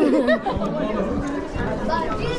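Several people talking over one another: close, lively chatter among a group in a hall.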